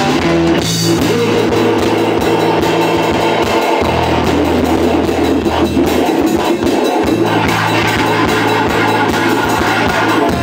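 Three-piece punk band playing live and loud: distorted electric guitar, electric bass holding long low notes, and a drum kit. It is an instrumental stretch with no vocals.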